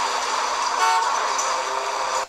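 A short vehicle horn toot about a second in, over steady rushing noise.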